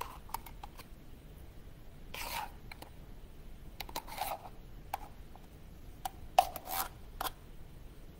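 A metal utensil scraping and clicking inside a tin can of apple pie filling as oversized apple pieces are cut up in the can: a few short scrapes and scattered clicks, the sharpest click about six and a half seconds in.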